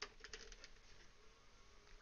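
Faint, steady hum of a Cisco switch's cooling fan running just after the switch is powered back on, with a few faint clicks at the start.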